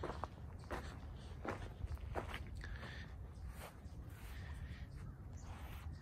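Footsteps of a person walking across grass, one step about every three-quarters of a second.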